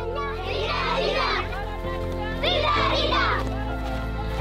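A group of children shouting in play, in two bursts of high voices about half a second in and again near three seconds, over background music of sustained chords that change near three seconds.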